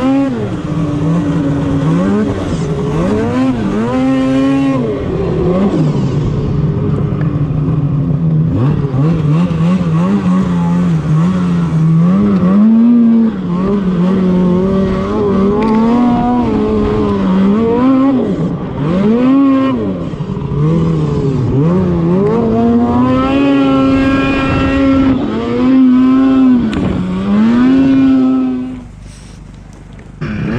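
Snowmobile engine pulling hard up a steep hill-climb course, its pitch rising and falling again and again with the throttle, heard from on board the sled. The engine sound drops away sharply near the end.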